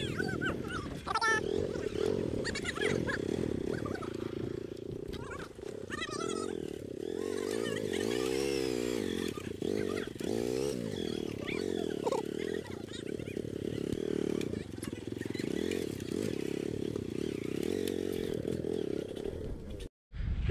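Hero motorcycle's small engine running at low speed, its pitch rising and falling as the throttle is worked while the bike is walked through mud.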